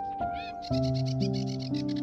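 Slow, calm instrumental relaxation music of held notes that change every half second or so, with a deep note coming in about a third of the way through. High chirps and trills, like birdsong, sound over it throughout.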